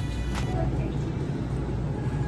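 Steady low rumble of a handheld phone camera being carried through a supermarket aisle, with the store's ambient hum underneath.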